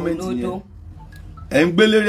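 A woman's voice talking, with a short pause in the middle in which a few faint, brief tones sound.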